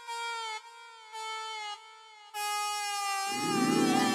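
Background score: a slow melody of long held notes on a single instrument, each gliding slightly downward. Lower accompaniment joins about three seconds in, and the melody takes on a wavering vibrato near the end.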